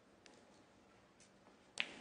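A single sharp click near the end, against a quiet background.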